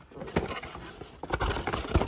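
Cardboard box being handled and its flaps opened: scraping and rustling of cardboard with a few knocks, louder in the second half.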